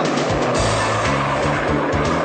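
Cartoon rocket blast-off sound effect: a steady rushing roar as the school bus launches into the sky. Music with a bass line comes in about half a second in.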